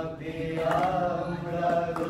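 Voices chanting in a sung tone, holding long notes that slide slowly in pitch.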